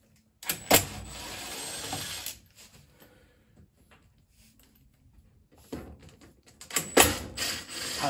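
Cordless power driver running in two spells, each about two seconds long with a sharp click at its start, backing screws out of the dryer's sheet-metal control-box cover.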